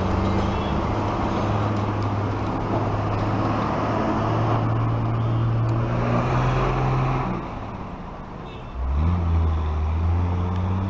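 Continuous rushing of a swollen, muddy river in flood, under a steady low hum. The whole sound drops for about a second, a little after seven seconds in, then comes back.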